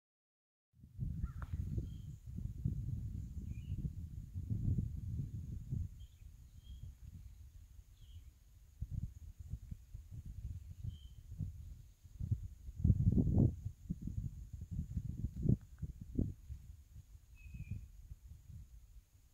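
Outdoor ambience: wind buffeting the microphone in irregular low gusts, strongest about two-thirds of the way through. A few short bird chirps and a faint steady high-pitched drone sit above it.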